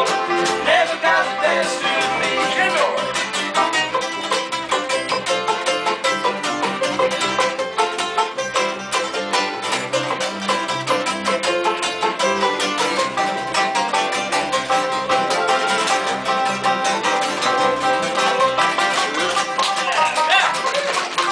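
Acoustic string band playing live: banjo, guitars, mandolin and fiddle together in a quick, steady picked rhythm.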